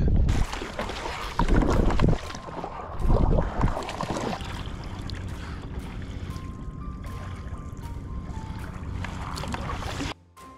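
Wind buffeting the microphone in loud gusts over the sea around a fishing kayak for the first four seconds or so, then a quieter steady rush of water along the kayak's hull as it is paddled. Faint music comes in underneath about six seconds in.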